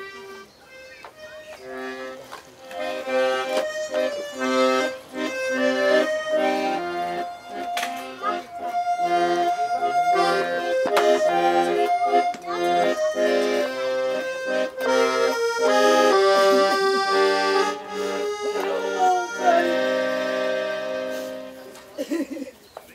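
Accordion playing a tune over held chords, soft at first and growing louder after about two seconds, then tailing off just before the end.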